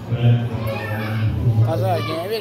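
Speech: a man talking into a handheld microphone, carried over the hall's loudspeakers, with other voices in the background and a second voice coming in near the end.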